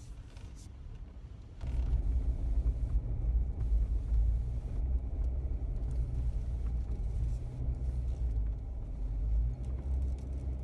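Jeep Wrangler Rubicon driving on a rough dirt trail: a steady low rumble of engine and tyres, quieter at first and much louder from about a second and a half in.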